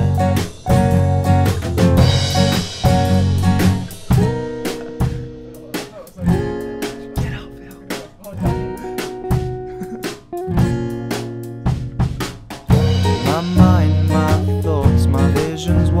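Instrumental passage of an indie band's song: guitar over a drum kit with snare and bass drum. It thins out and drops in loudness a few seconds in, then comes back full and louder about thirteen seconds in.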